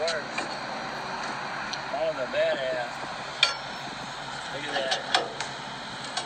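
Two sharp metallic clinks, about a second and a half apart, from a steel cross lug wrench being set on and worked against a trailer wheel's lug nuts.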